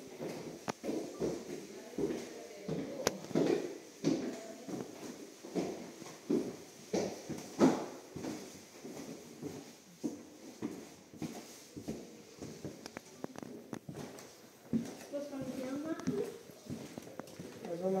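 Footsteps on wooden floorboards: irregular knocks and thuds of shoes on the planks, over people talking in a room, with a voice coming up more clearly near the end.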